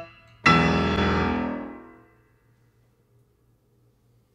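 Steinway grand piano: a single full chord struck hard about half a second in, ringing out and dying away over about a second and a half, the closing chord of a solo Latin jazz piano piece.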